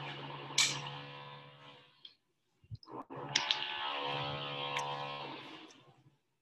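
A steady pitched tone with many overtones, sounding twice and fading out each time, with a few sharp clicks over it.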